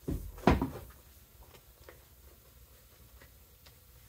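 Red vinyl upholstery sheet being handled over a foam-padded board: two short rustling bursts in the first half-second, the second louder, as the sheet is lifted and moved, then faint ticks of handling.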